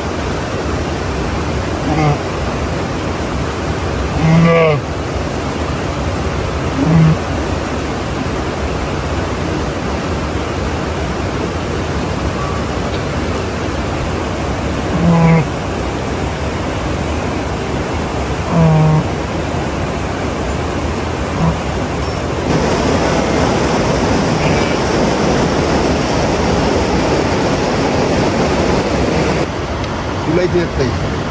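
Sheep and lambs bleating, a handful of short calls spread through the first twenty seconds, over a steady rushing noise. From about two-thirds of the way in, the rushing noise grows louder.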